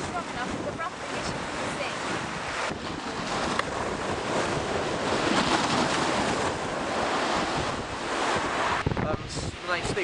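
Sea waves breaking and washing against a concrete sea wall, its steps and wooden groynes, with strong wind buffeting the microphone. The surf noise is continuous and swells loudest about halfway through.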